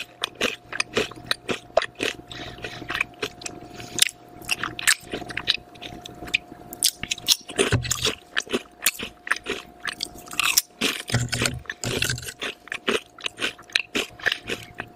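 Close-miked crunching and chewing of ridged potato chips: a dense run of sharp, crisp crackles, several a second.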